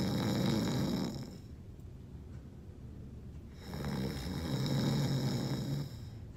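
A person snoring: two long snores, the first at the start and a longer one from a little past halfway to near the end, the second with a steady low drone.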